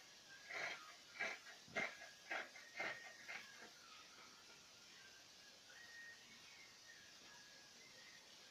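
Large scissors cutting through cotton dhoti cloth: about seven quick shearing snips in the first three and a half seconds, then they stop.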